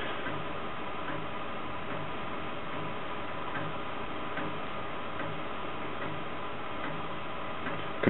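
Floppy disc drive formatting an 80-track disc track by track. The drive runs steadily, with a light tick roughly once a second as the head steps on to each next track.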